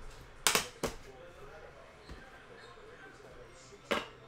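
Two sharp metal clicks about a second in from the latches of an aluminium briefcase, then another sharp click near the end.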